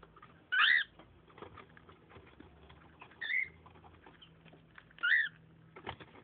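Cockatiel giving three short chirps, spaced a couple of seconds apart, with faint scratching and tapping on the cardboard box between the calls.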